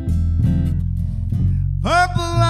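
Live acoustic band music: an acoustic guitar strumming over sustained low bass notes, with a held sung note sliding up near the end.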